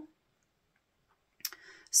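A pause of near silence, then a single sharp click about one and a half seconds in, followed by faint noise just before a woman's voice resumes.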